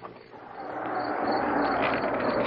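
A radio-drama sound effect: a steady, noisy hiss-like sound with a faint low hum under it, swelling steadily louder from near quiet over about two seconds.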